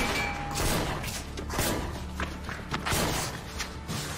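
A string of handgun shots in a shootout, about one every half second, over tense background music.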